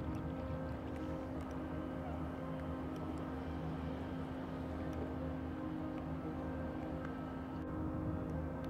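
Small boat motor running with a steady hum at one fixed pitch and an even level while the boat is under way.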